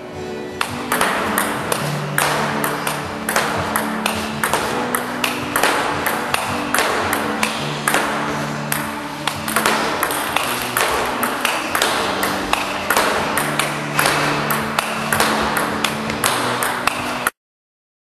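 Rapid sharp clicks of a table tennis ball against bat, table and rebound board in a fast continuous rally, set over background music with held chords and a bass line; the sound cuts off abruptly near the end.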